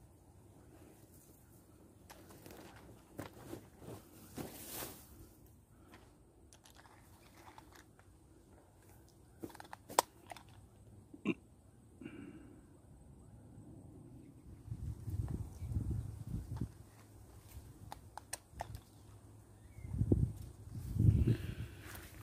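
Grass and leaves rustling and crackling against a moving handheld camera, with scattered clicks of handling noise, two sharper clicks near the middle, and low thumps in the second half.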